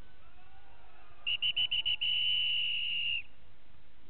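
A referee's whistle giving five or six short high toots, then one long steady blast of about two seconds, signalling the end of a paintball game.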